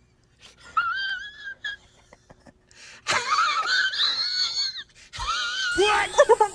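A cat giving drawn-out, wavering meows: a shorter one soon after the start, then a louder, longer one that rises in pitch, lasting nearly two seconds. Another voice-like call starts near the end.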